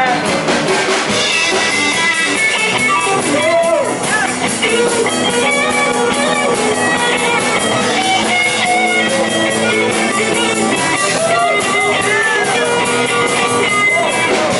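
Live rock-and-roll boogie band playing an instrumental break: electric guitar lead with bent notes over drums and rhythm guitars.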